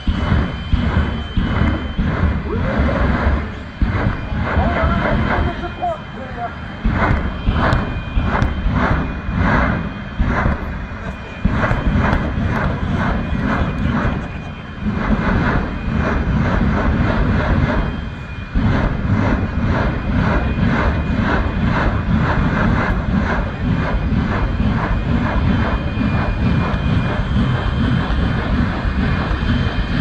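Jet engine of a jet-powered drag racing vehicle running at full power during its smoke-and-fire show, a loud continuous noise with repeated surges and dips and stretches of rhythmic pulsing as the afterburner is pumped.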